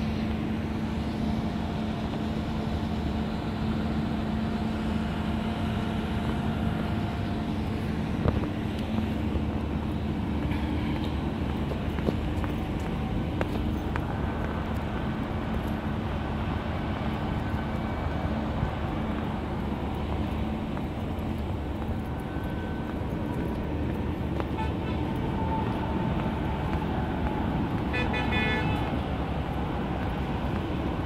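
Steady engine hum and tyre and road rumble of a car driving slowly through city streets, heard from the moving car. A short high pitched tone sounds near the end.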